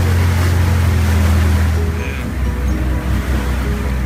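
A boat's engine running with a steady low hum over wind and water noise; about halfway through the hum drops lower in pitch and gets quieter.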